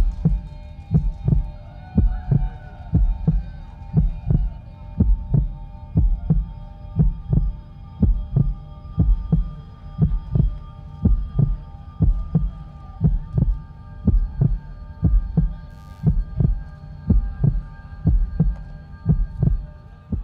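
A heartbeat sound effect played through a PA system: steady, evenly spaced low thumps, a little over one a second, over a sustained electronic drone.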